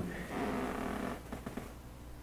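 A man's soft breath into a microphone in a pause in speech, fading after about a second, over a steady low electrical hum.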